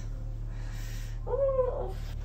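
A woman's short, high-pitched contented vocal sound, its pitch rising then falling, about a second and a half in, while she hugs a soft pillow, over a low steady hum.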